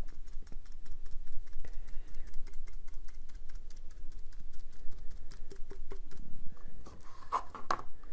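Foam brush dabbing Mod Podge onto a glitter-coated stainless steel tumbler: a run of quick soft taps, several a second, with a couple of louder knocks near the end.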